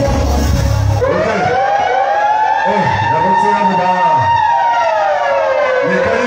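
The dance music cuts out about a second in and a siren-like sound effect comes over the PA: one long tone that rises, holds steady, then slides back down near the end. A voice on the microphone talks underneath it.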